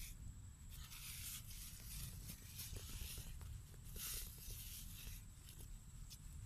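Scraping and squelching of wet mud being worked by hand, in a few short rustling bursts over a steady low rumble.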